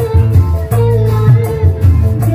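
A woman singing into a microphone over loud amplified music played through a PA loudspeaker stack, with a steady beat in the bass.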